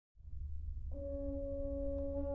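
A low rumble fades in, then about a second in French horn and low brass begin one long held note, steady and unchanging.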